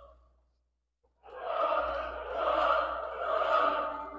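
Opera recording: a singer's held note with vibrato fades out at the start, then after about a second of silence a chorus comes in loudly, swelling three times.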